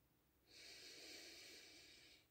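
A woman taking one slow, deep breath, faint and airy, starting about half a second in and lasting about a second and a half.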